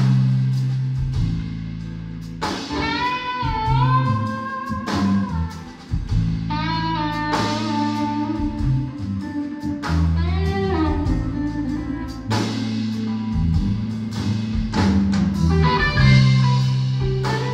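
Live electric band playing an instrumental passage: electric guitar lines with bent, gliding notes over electric bass and drum kit, with no vocals.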